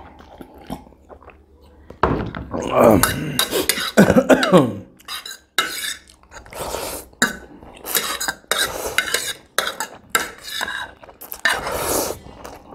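Spicy instant noodles being slurped off a metal fork, with the fork scraping and clinking on a ceramic plate. About two seconds in, a drawn-out vocal "oh" falling in pitch.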